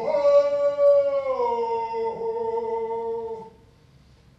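A man singing one long, held chant note with no drum strokes. The pitch jumps up at the start, slides down about a second in, holds, and stops about three and a half seconds in.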